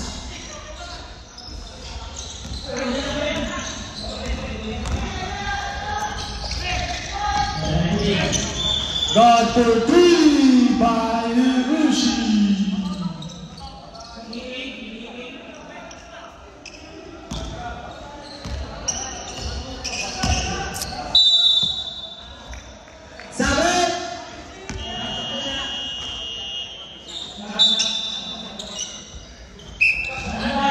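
Basketball game in a large gym hall with a wooden floor: the ball bouncing and dribbling, sharp knocks of play, and players' shouts and indistinct voices echoing, loudest in the first half.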